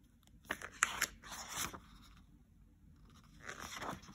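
Pages of a hardcover picture book being turned and handled, paper rustling and scraping in two bouts, the first about half a second in and the second near the end.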